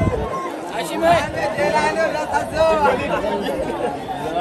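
Several football spectators talking and calling out at once close by, overlapping voices over a wider crowd chatter.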